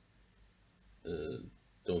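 Faint room tone, then about a second in a man's short wordless vocal sound lasting half a second; speech begins near the end.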